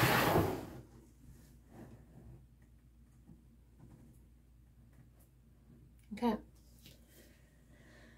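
A brief scraping, rustling noise as a stretched canvas is set down onto the sticks over a plastic bin, fading within the first second, then quiet room tone.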